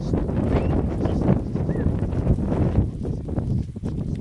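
A large herd of goats moving over dry dirt: many hooves stepping and scuffling at once, with wind rumbling on the microphone.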